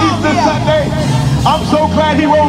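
A gospel worship leader's voice through the PA, singing and calling out over a live band, with a low bass note held underneath.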